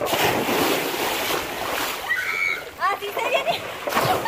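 Water splashing and rushing as a rider comes down a water slide into a pool, starting suddenly. In the second half, short high-pitched calls from a voice sound over the water.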